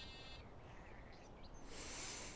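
A held music chord cuts off just after the start, leaving quiet room tone. A soft, airy hiss comes in near the end.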